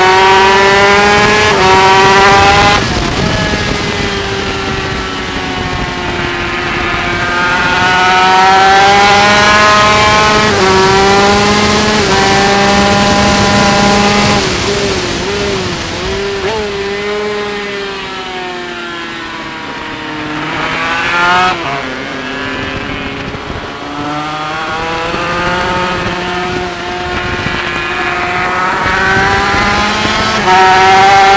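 Yamaha TZ250 two-stroke twin race engine at full racing pace, heard from a camera on its fairing. Its pitch climbs and drops back at each upshift several times. About halfway through the pitch falls away and the engine goes quieter as the rider slows for a corner, then it winds up through the gears again. A steady hiss of wind and spray off the wet track runs underneath.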